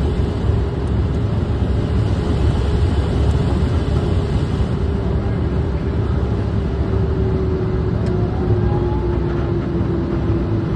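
Airplane cockpit noise on the final moments of a landing approach: steady airflow and engine rumble with a steady engine tone that slowly drops in pitch over the last few seconds as power comes back for the landing.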